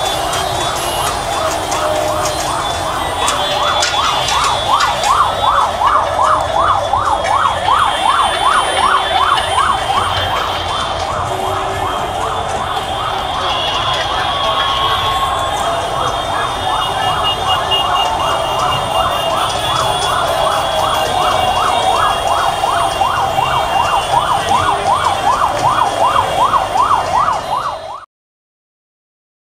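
Electronic yelp siren on a motorcade escort vehicle, a fast repeating wail sweeping about three times a second, over the steady noise of a large crowd.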